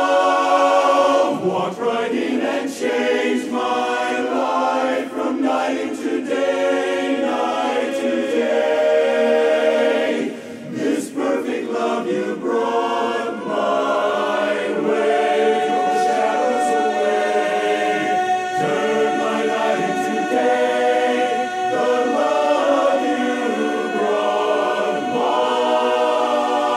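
Men's barbershop chorus singing a cappella in close four-part harmony, with long held chords and a brief break about ten and a half seconds in.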